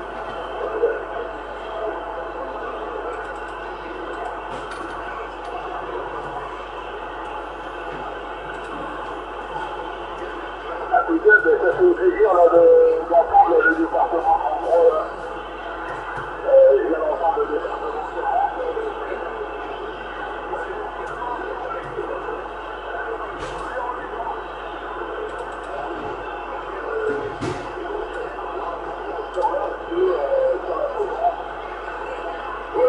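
Yaesu FT-450 transceiver receiving on the 27 MHz CB band: a steady hiss of band noise with faint, garbled distant voices. The voices come up louder for a few seconds about eleven seconds in, and again around sixteen seconds.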